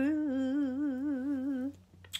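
A woman's voice, unaccompanied, holding one long hummed note with a wide, even vibrato, the final note of her song; it stops shortly before the end.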